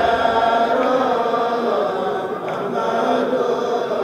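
A kourel, a group of Senegalese Mouride men, chanting a khassida together in unison, the voices drawn out on long held notes.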